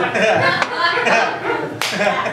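Live audience laughing and clapping, with one sharp crack near the end.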